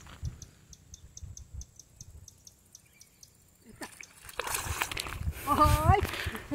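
A hooked tilapia splashing at the water's surface as it is pulled in and lifted out on a bamboo pole, with the splashing building from about four seconds in. Before that, a faint rapid high ticking, about five a second, over near silence.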